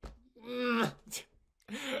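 A man's drawn-out vocal moan, about half a second long, followed by a short sharp breath, then laughter starting near the end.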